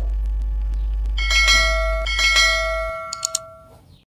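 Subscribe-animation notification-bell sound effect: a small bell is struck twice, about a second apart, each ring fading away, over a low hum. Two short clicks come near the end.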